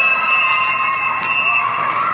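Ice-rink horn or buzzer sounding: a loud, steady chord of several high tones held without a break.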